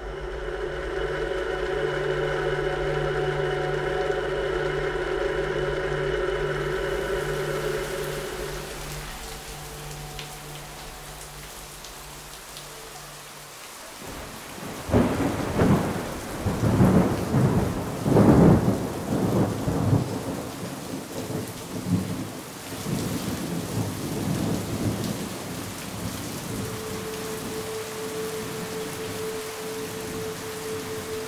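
A thunderstorm: heavy rain falling, with thunder rumbling in loud surges for several seconds about halfway through, then steady rain. A steady droning tone comes first and fades out before the thunder.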